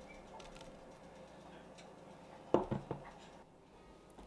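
Quiet kitchen room tone with a few faint light clicks, and one short louder knock about two and a half seconds in.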